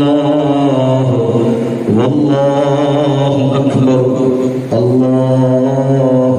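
Men's voices chanting a repeated Arabic refrain in long, drawn-out phrases, with short breaks between phrases about two seconds in and again near five seconds.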